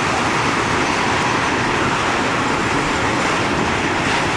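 Open-top freight wagons rolling past close by: a loud, steady rumble of steel wheels running on the rails.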